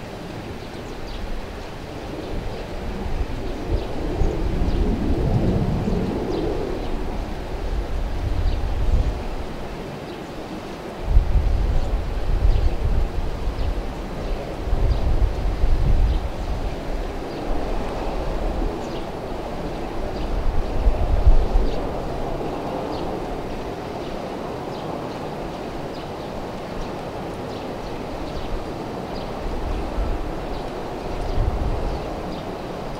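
Distant low rumble of two AV-8B Harrier jets' Pegasus turbofan engines as they approach slowly for a vertical landing, rising and falling in uneven surges.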